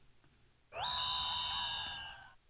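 Synthesized electronic sound effect from a played-back logo animation: a quick upward swoop that settles into a steady, bright chord of several high tones for about a second and a half, fading near the end.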